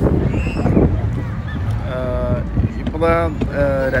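Steady low rumble of wind on the microphone aboard a moving cruise boat, with a person's voice in the second half.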